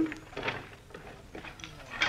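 Faint, light clattering and tapping of sticks: a radio studio sound effect of kindling being thrown into a fireplace.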